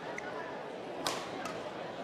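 A single sharp smack of a badminton racket on a shuttlecock about a second in, ringing briefly in a large sports hall, over a steady murmur of hall noise.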